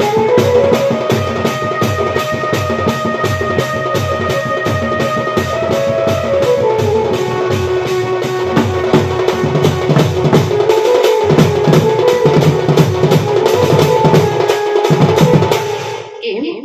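Live folk music on a hand-played barrel drum keeping a fast, steady beat under a held, slowly stepping melody line. The music stops abruptly at the very end.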